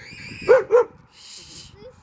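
A child's high squeal, then two short bursts of laughter; a brief hiss follows about halfway through.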